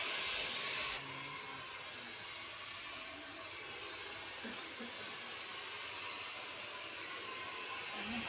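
Handheld hair dryer blowing steadily while hair is blow-dried with a round brush; the rush of air drops a little about a second in.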